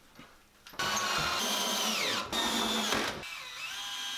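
Cordless drill driving screws into the plywood top shelf, starting about a second in, in three runs of motor whine; in the first two the pitch falls as the screw pulls tight.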